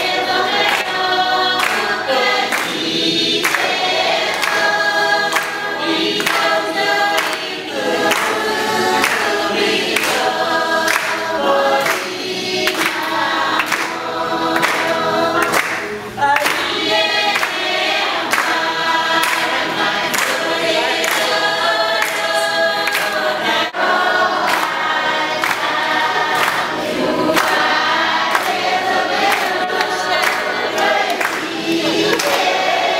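A choir of many voices singing together in harmony, with a regular beat of sharp strokes running under the song.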